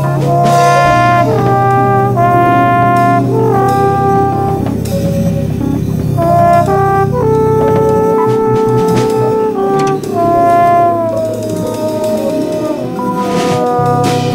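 Free jazz recording: a brass instrument plays held notes that slide up and down between pitches, over a low sustained bass.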